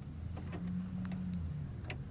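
Thread being drawn out and handled under a sewing machine's presser foot, with a few faint light clicks over a low steady hum.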